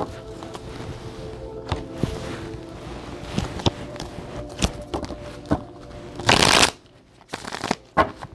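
A deck of tarot cards being shuffled by hand: soft clicks and slides of cards against each other, then a louder burst of flicking cards lasting about half a second near the end.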